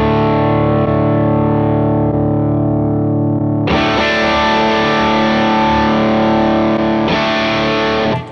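Distorted electric guitar chord played through a Fractal Audio FM3 amp modeler, left ringing and strummed again about four seconds in and once more near the end. Its tone shifts slightly as different speaker-cabinet impulse responses are auditioned.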